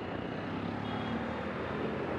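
Steady traffic noise from a busy city street, a continuous low rumble of passing vehicles.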